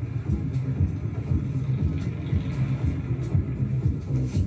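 Electronic background music with a pulsing low beat, the TV drama's score.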